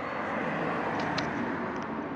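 Steady rushing background noise that swells a little through the middle and eases off again, with a few faint clicks.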